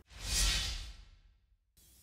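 A whoosh transition sound effect: one airy swell that rises and fades away over about a second.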